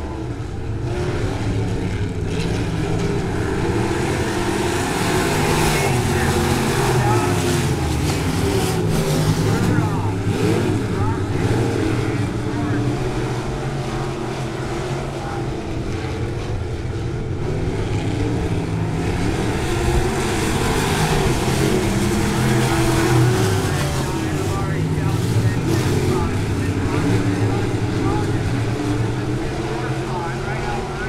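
A pack of IMCA Sport Mod dirt-track race cars running laps, their engines rising and falling in pitch again and again as they accelerate down the straights and ease off for the turns.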